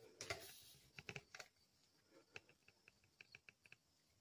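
Faint, scattered clicks and taps over near silence: a few sharper ones in the first second and a half, then a run of lighter ticks later on.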